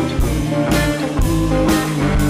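Live rock band playing: electric guitar over bass notes and a drum kit, with a drum and cymbal hit about twice a second.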